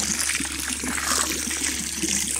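A thin stream of water poured from a plastic bottle, splashing steadily onto a pond's surface.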